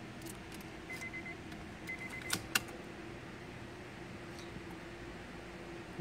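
Ignition key of a 2004 Honda Accord handled and turned to on, with the engine not started. Two short runs of quick high electronic beeps about a second apart, then two sharp clicks, over a faint steady hum.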